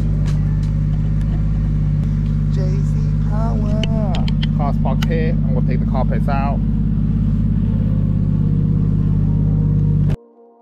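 Toyota JZX100 Mark II's straight-six engine idling steadily, with voices talking over it for a few seconds in the middle. The sound cuts off suddenly at the end.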